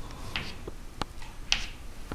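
Chalk on a blackboard: sharp taps and short scratchy strokes as numbers are written, about three strokes a second apart.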